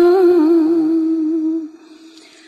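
A single voice holding one long sung note with a slight waver, the drawn-out last syllable of a chanted Vietnamese verse; it fades out shortly before the end.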